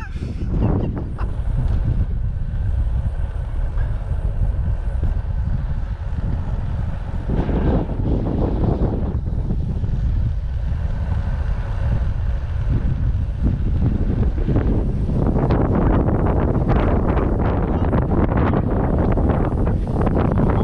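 Wind rumbling on the microphone of a camera on a moving road bike, growing stronger over the last few seconds.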